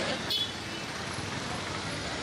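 Outdoor roadside ambience: steady street and crowd noise, with one short high-pitched voice call shortly after the start.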